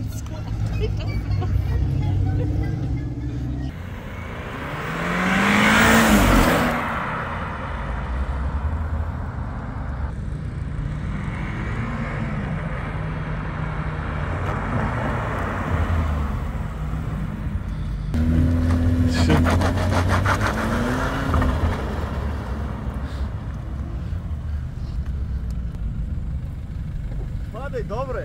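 Car engines driving and accelerating past with rising revs. One car passes close and loud about five to seven seconds in, another revs up around eighteen to twenty-one seconds in, and engine rumble carries on in between.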